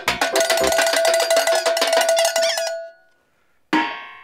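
A fast clatter of metallic clanks for about three seconds. Near the end comes a single strike on a metal bowl used as a quiz gong, ringing on and fading.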